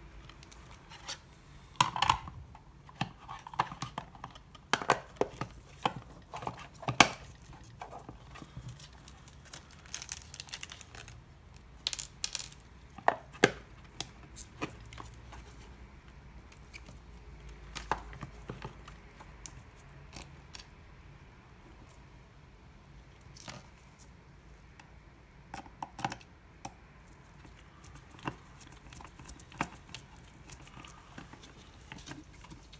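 Scattered clicks, taps and rustles of a small plastic project box being handled and pressed together with gloved hands, the loudest knocks in the first half. Near the end, a screwdriver works a screw into the box lid.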